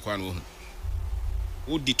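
A man's speech, broken by a low buzz lasting about a second before the talk resumes.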